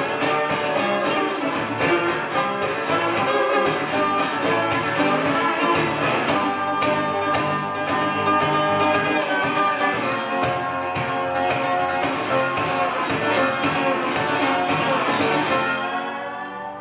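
Metal-bodied resonator guitar fingerpicked, a busy run of plucked notes with no singing, ending on a last chord that rings and fades near the end.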